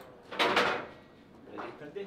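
Table football (foosball) in play: a loud burst about half a second in, then lighter knocks of the ball and rods near the end.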